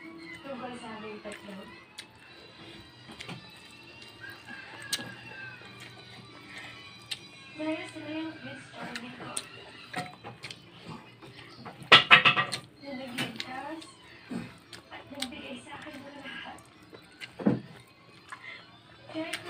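Indistinct background voices and music, with scattered small clicks and knocks and one brief louder burst about two-thirds of the way through.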